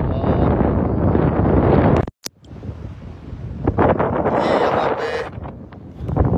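Wind buffeting a phone's microphone, loud and rumbling for the first two seconds. It cuts off abruptly with a click and a moment of silence, then quieter wind noise follows with a few light clicks.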